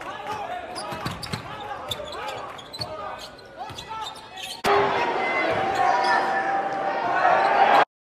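Basketball game sound in a hall: a ball bouncing on the court with sharp knocks and squeaks. About halfway through, a louder swell of crowd noise comes in and cuts off suddenly just before the end.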